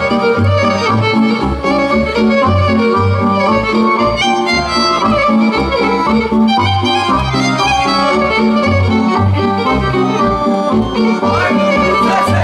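Romanian folk dance tune played on accordion and fiddle, with a steady pulsing bass beat under a busy melody.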